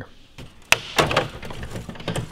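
A single sharp snap about two-thirds of a second in, then a quick run of clicks and rattling as plastic truck grille parts are handled and knocked together.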